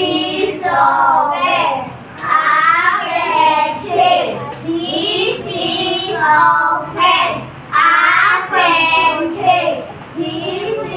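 Children's voices reciting a lesson aloud in a sing-song chant, phrase after phrase with short breaks between them.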